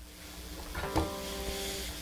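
Acoustic-electric guitar: a soft chord strummed about three-quarters of a second in, with a firmer stroke just after, left to ring.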